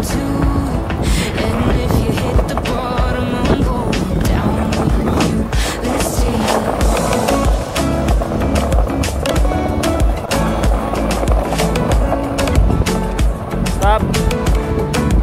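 Skateboard wheels rolling on asphalt, with repeated clicks and clacks of the board, under a music track.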